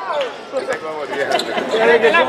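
A basketball being dribbled on the court, a few separate bounces, heard under voices.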